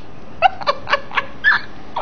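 A woman laughing in a quick, irregular run of short, high-pitched bursts.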